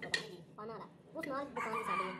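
A rooster crowing: one long call in the second half that drops in pitch at its end. A sharp click comes just after the start.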